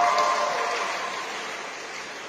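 Loud, sustained shouting that echoes in a large sports hall and fades steadily over about two seconds.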